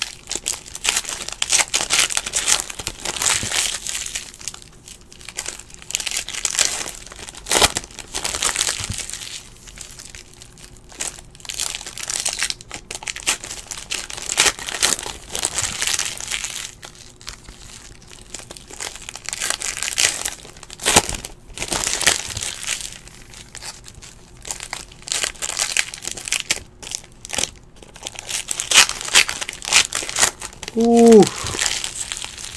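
Foil wrappers of 2017-18 Panini NBA Hoops trading-card packs being torn open and crumpled by hand: an irregular crinkling that comes and goes in bursts, with a few sharper tearing snaps.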